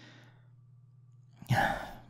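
A man sighing, one short breathy exhale about one and a half seconds in, after a pause that holds only a faint steady low hum.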